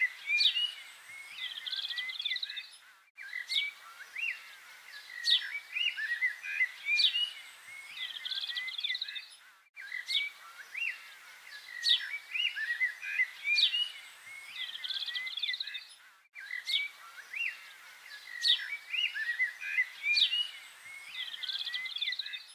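Birdsong: a mix of short chirps, trills and whistled calls from several birds. The same stretch of song repeats about every six and a half seconds, with a brief gap at each join.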